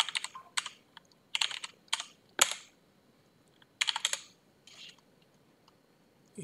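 Typing on a computer keyboard: single keystrokes in short, uneven runs, then a pause of about a second before a few more keys.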